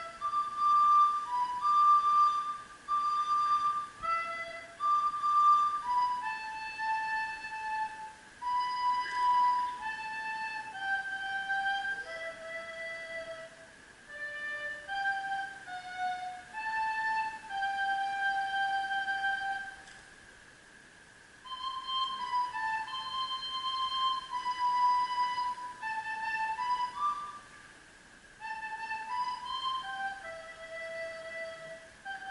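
Solo recorder playing a Christmas melody one note at a time, in phrases of held notes, with a break of a second or so about twenty seconds in and a shorter one near the end.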